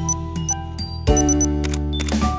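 Background music with sustained chords, overlaid with a camera sound effect: short high autofocus beeps, three in quick succession about a second in, followed by a shutter click near the end.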